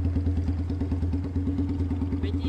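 Kawasaki Binter (KZ200) custom chopper's single-cylinder four-stroke engine idling, with an even, rapid exhaust beat of about a dozen pulses a second.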